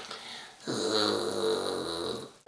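A person's voice holding one low, pitched note for about a second and a half, starting about half a second in.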